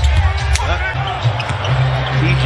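Basketball game broadcast sound: a ball bouncing on a hardwood court, with a couple of sharp knocks, under a steady bass-heavy music bed and broadcast commentary.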